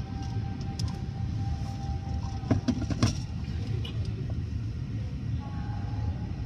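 Steady low rumble of automatic car wash machinery, heard from inside a car's cabin, with a few sharp knocks about two and a half to three seconds in.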